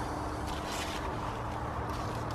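Steady low outdoor rumble with faint rustling of dry pumpkin vines and leaves as a pumpkin is reached for and handled, about half a second in.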